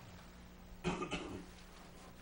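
A person coughing once, in two quick bursts about a second in, over quiet room tone with a faint steady hum.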